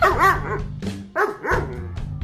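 German Shepherd barking in two short bursts about a second apart, over background music.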